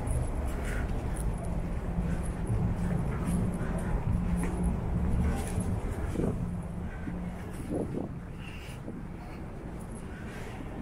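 Street traffic: a motor vehicle's engine running close by with a steady low hum, dying away after about seven seconds and leaving quieter street noise.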